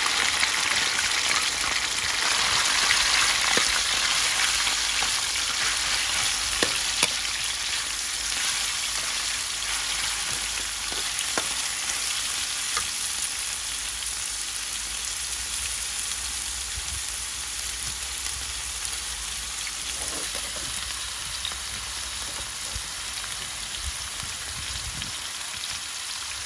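Sliced raw beef sizzling in hot oil with garlic in a metal wok. The sizzle is loudest just after the meat goes in and eases off gradually, with a few clicks from a metal spatula stirring against the wok.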